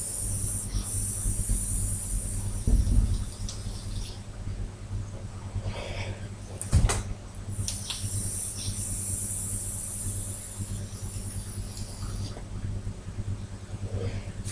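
E-cigarette with a Boge F16 cartomizer in a Smoktech DCT tank being drawn on: two long draws, each a steady high hiss of about four seconds. A sharp click falls between them.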